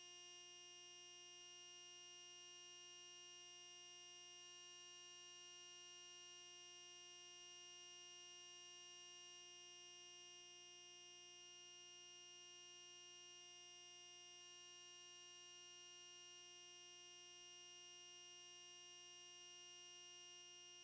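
Near silence: a faint, steady electronic hum made of several fixed tones, unchanging throughout.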